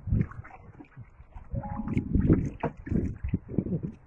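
Wind buffeting the microphone and water moving around a small boat, in irregular low rumbles that grow heavier about halfway through, with a brief steady tone just before.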